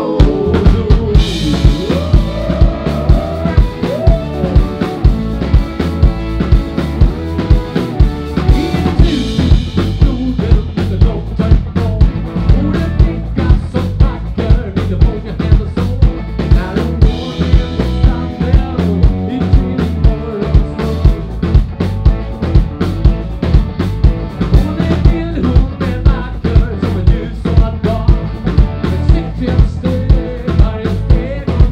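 Rock and roll band playing: a drum kit keeps a steady driving beat under electric guitars and bass.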